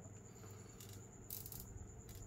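Faint handling noise of a plastic action figure being picked up off the display: a light rattle and two short, high rustles near the middle.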